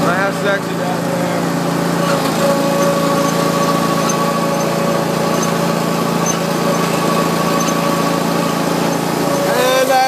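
Exmark Lazer Z zero-turn mower's engine running steadily while the mower is driven along, with a steady high tone over it.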